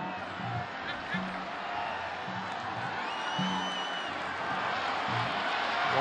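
Football stadium atmosphere: music from the stands playing a low repeating riff over crowd noise, with a high whistle about three seconds in and the crowd growing louder toward the end.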